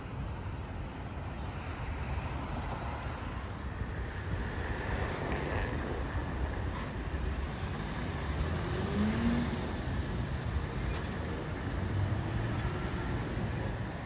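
Steady rumble of passing city road traffic, with a few faint short gliding tones about nine seconds in.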